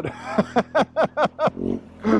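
A man laughing in a quick run of short bursts over the low, steady hum of a BMW motorcycle engine turning over gently, with some wind hiss.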